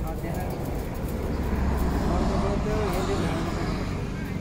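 Indistinct voices over the low rumble of a passing vehicle, which swells to its loudest around the middle and then eases off.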